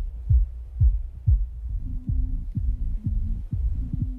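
A dance track's kick drum beating about twice a second, heavily muffled so that only the deep bass thuds remain, like a beat felt through the floor rather than heard. About two seconds in, a muffled low bass melody joins the thuds.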